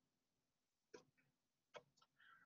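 Near silence with two faint short clicks about a second apart: keystrokes on a computer keyboard as a dot is typed into a regex pattern.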